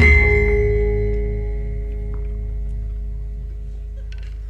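Javanese gamelan closing a piece: a final stroke of the whole ensemble right at the start, then the deep gong and bronze metallophones ringing on together and slowly dying away.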